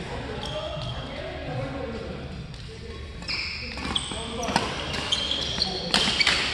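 Badminton rally: from about halfway in, rackets crack against the shuttlecock several times while sneakers squeak on the court floor, over background voices.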